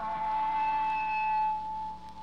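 A single long, steady electric guitar note rings out as a live rock song ends, dying away shortly before the end, over a low amplifier hum.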